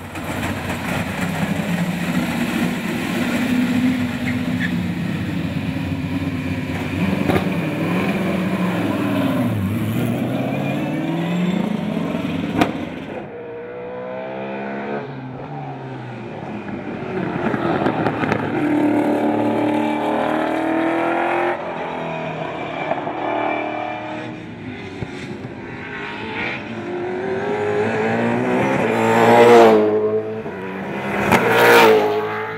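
Ford V8 Supercar's V8 engine revving on track, its pitch climbing and dropping through gear changes and corners. A car comes closer and gets loudest near the end.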